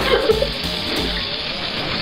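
Steady rush of water running from a kitchen tap into the sink, with music playing underneath.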